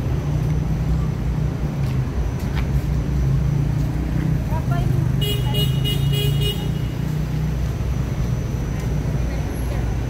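Steady low rumble of city street traffic, with a vehicle horn sounding once, held for about a second and a half, about five seconds in.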